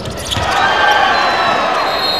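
Basketball game sound in an arena: the ball bouncing on the hardwood court, then crowd noise that rises about half a second in.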